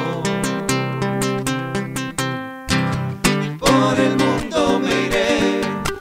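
Acoustic guitars strumming chords in an instrumental passage of a folk song, with a short break about two and a half seconds in, then a few hard strums.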